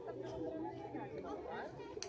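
Several overlapping voices chattering, with no clear words, and a short sharp click near the end.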